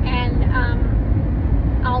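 Steady low road and engine rumble inside a moving car's cabin, under a woman's talking at the start and again near the end.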